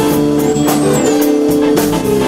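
Live funk band playing an instrumental groove: electric guitars, bass and drum kit with regular cymbal strokes, under sustained held chords.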